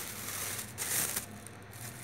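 Plastic shopping bag rustling and crinkling as vegetables are handled, with the loudest rustle about a second in.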